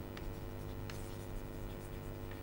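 Chalk writing on a chalkboard: faint scratching strokes with a few light taps, over a steady low electrical hum.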